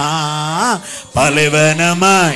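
A man singing a Tamil worship song into a handheld microphone, holding long notes with a slight vibrato. The first note bends up and breaks off a little before a second in, and after a short breath a second long note begins.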